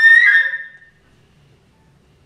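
Solo concert flute holding a loud, high note that bends slightly upward and fades out within the first second, followed by a pause of near silence.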